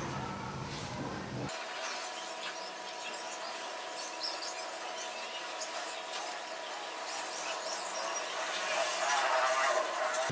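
Leather handlebar tape being pulled and wrapped around a metal bicycle handlebar: small rubbing, creaking and clicking handling sounds, louder and more wavering near the end.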